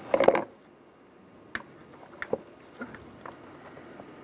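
Engine oil filler cap being twisted off by a gloved hand and lifted out of the valve cover: a handful of light, separate plastic clicks and taps.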